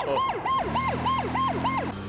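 Police car siren in a fast yelp, about four rising-and-falling cycles a second, cutting off near the end. A steady low engine-like hum joins about a third of the way in.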